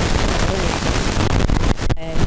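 Loud rushing, rumbling handling noise on a handheld interview microphone, with a few knocks near the end. It partly drowns out a woman's voice.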